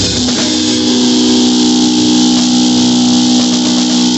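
Rock music with a long held, distorted electric guitar chord over a steady high wash, and a drum kit played along with it.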